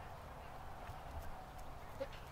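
Faint hoofbeats of a horse trotting on grass, a few soft strikes over a steady low rumble.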